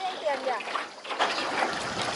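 Indistinct voices with light splashing and trickling water around a rowing boat's oars.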